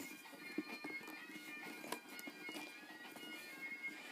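Quiet handling of bagpipe parts: a few faint clicks and light rubbing as the blowpipe stock and a plastic water trap are picked up and held. A faint steady high-pitched tone sits under it.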